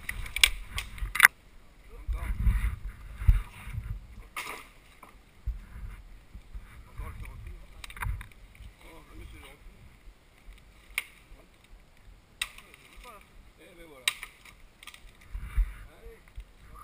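Scattered knocks, cracks and rustles from men handling a fallen tree and branches in brush, loudest in the first second, with low rumbling handling or wind noise on the helmet-mounted camera and faint voices in the middle.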